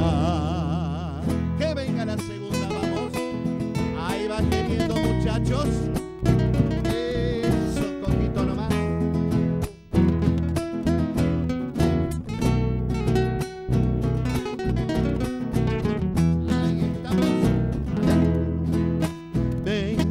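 Folk band playing live: nylon-string acoustic guitars over electric bass, in a steady rhythm.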